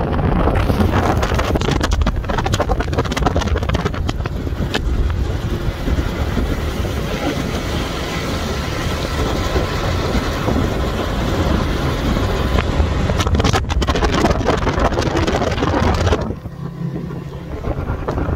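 Yamaha 50 outboard motor driving a small speedboat at speed, with heavy wind buffeting on the microphone. The wind noise drops for a moment near the end.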